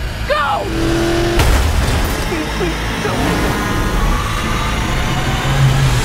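Dense film-trailer sound mix, loud throughout: a short shouted line near the start, then heavy rumbling noise with booming hits about a second and a half in and again at the end.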